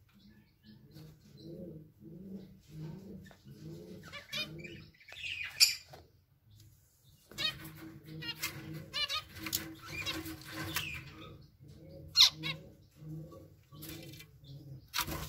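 Caged zebra finches calling, with short chirps and wavy song phrases, over a low pulsing sound at about two pulses a second. Two sharp, loud bursts stand out, about five and a half and twelve seconds in.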